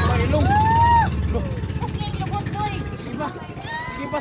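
Boat engine running with a steady low hum that drops away about a second and a half in, while people let out long, drawn-out exclamations over it, again near the end.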